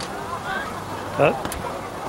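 Rugby players' shouts and calls around a ruck, with a single word spoken close to the microphone about a second in and a sharp click shortly after.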